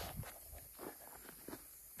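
Faint footsteps on dry, tilled soil, a few soft steps.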